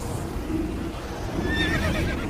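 Low rumbling drone with a high, wavering cry rising out of it in the last half-second, a horror sound effect.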